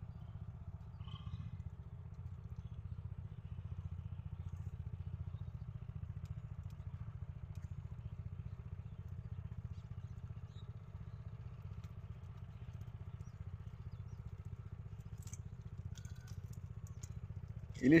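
A small engine running steadily at one constant speed, a low drone.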